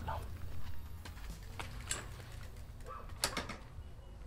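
Faint low background hum with a few light clicks and knocks, the loudest about three seconds in.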